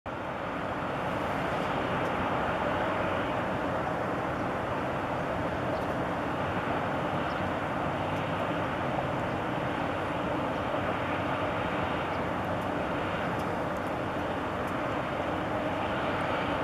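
Steady city background din: an even rumble of distant traffic with a faint, constant low machinery hum.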